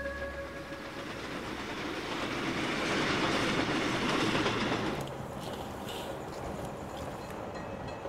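Electric passenger train passing at speed: a rushing rumble with wheels clacking on the rails, building to its loudest about three to five seconds in. It drops suddenly to a quieter steady rumble.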